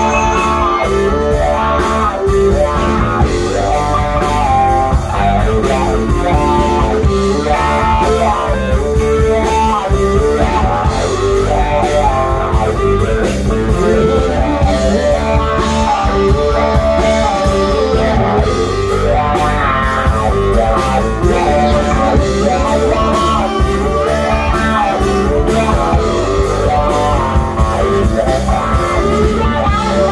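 Rock band playing an instrumental passage: a guitar playing a melodic line over bass and drum kit, with no singing.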